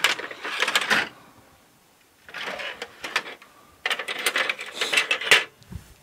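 Metal hand tools clinking and rattling in three short bursts as an adjustable C spanner is picked up and handled.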